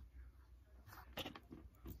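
Soft macaroon clay being squeezed and pulled apart in the hands, giving a few faint crackles and clicks, mostly in the second half.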